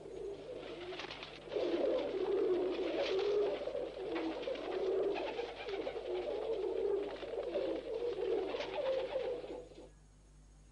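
Several pigeons cooing together in overlapping, throaty warbles, quieter at first and louder from about a second and a half in.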